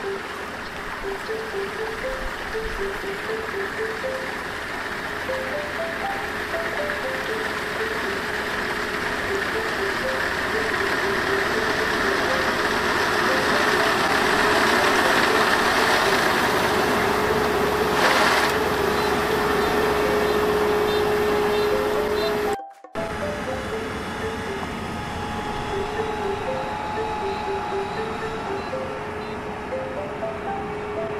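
Background music with a simple stepping melody plays over a Kubota ER470 combine harvester running and cutting rice. The machine noise grows louder as the combine comes close, then drops out suddenly about three-quarters of the way through before the music carries on over a quieter machine sound.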